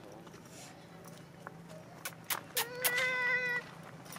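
A macaque's call: one steady, high-pitched cry held for about a second, a little past halfway through, just after a couple of sharp clicks.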